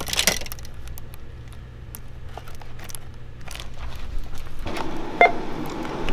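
Clicks and rustling of a cardboard retail box being handled, then a short electronic beep about five seconds in from a checkout barcode scanner.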